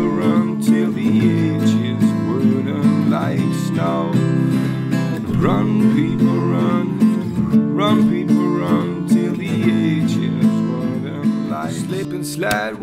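Acoustic singer-songwriter music led by strummed acoustic guitar, with a melody line sliding in pitch over the chords.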